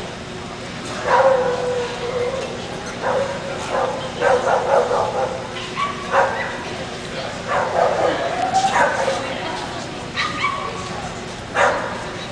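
A dog calling in a run of short pitched calls, several of them sliding in pitch, over background voices.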